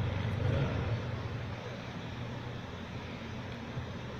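A steady low rumble, a little louder in the first second.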